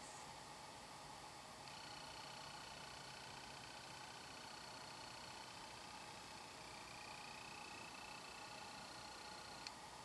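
Near silence: quiet room tone with faint, thin, steady high-pitched tones running through most of it, and one faint tick near the end.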